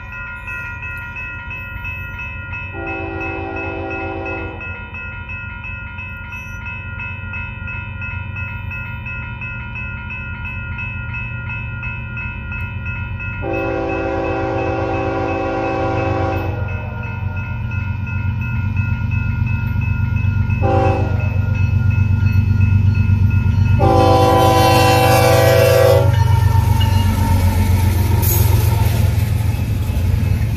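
Diesel freight locomotive approaching a grade crossing, sounding its horn in the long, long, short, long crossing pattern and growing louder until it rushes past with engine and wheel noise near the end. A crossing bell rings steadily throughout.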